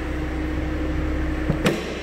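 2012 Ford Mustang's 3.7-litre DOHC V6 idling smoothly and steadily, with one short knock near the end.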